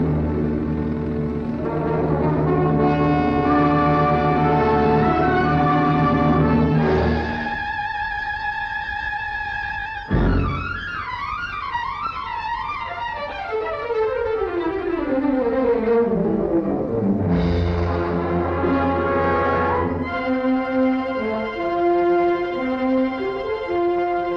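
Orchestral music led by brass, with held chords, then a stretch of falling phrases in the middle, and held chords again near the end.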